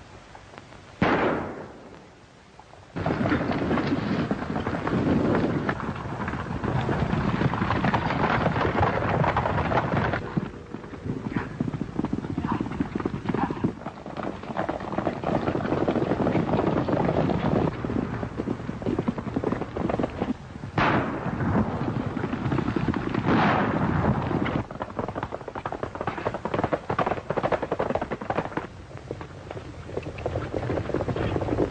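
Gunshots in a horseback chase: one shot about a second in, then the steady rumble of galloping horses' hooves, with two more shots close together about two-thirds of the way through.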